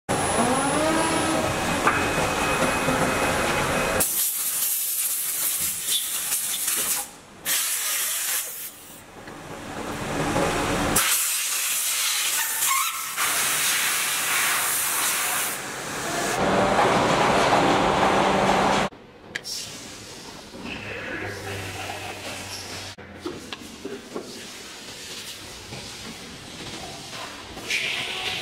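Liquid silicone injection molding machines working: a rising whine in the first seconds, then long stretches of loud hissing air, switching abruptly several times. The last third holds quieter machine running noise.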